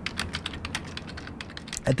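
Typing on a computer keyboard: a quick, steady run of keystrokes, about eight to ten a second.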